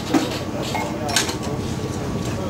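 Steel tyre levers clinking against a dirt bike's spoked wheel rim as a knobby tyre is worked over the rim: two sharp metal clinks about a second apart.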